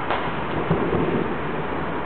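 Distant aerial fireworks shells bursting in a quick string of low booms that run together into a thunder-like rumble, over a steady hiss.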